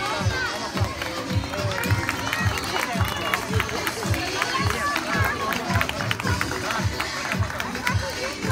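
Background music with a steady beat, about two beats a second, with a voice over it.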